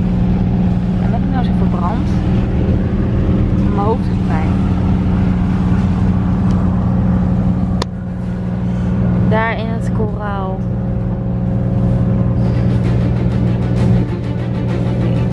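A boat's engine drones steadily, with voices heard over it at times. The sound drops briefly about eight seconds in, then carries on.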